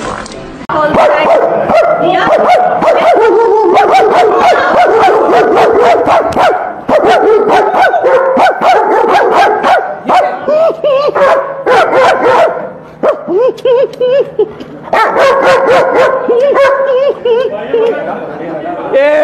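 A man barking and yelling at a German Shepherd, mixed with dog barks, in loud repeated bouts with a short lull about two-thirds of the way through.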